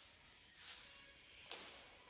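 Very quiet movement sounds of a person stretching on a yoga mat. There is a soft hissing rustle just after half a second in and a single light tap at about a second and a half.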